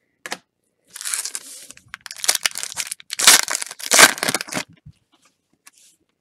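Trading-card pack wrapper being torn open and crumpled, a crackling, rustling noise in several bursts from about a second in until nearly five seconds, loudest twice in the second half.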